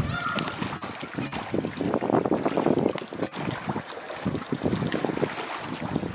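Pool water splashing and sloshing in irregular bursts as a hippopotamus plays in it with a floating ball, heaviest about two to three seconds in.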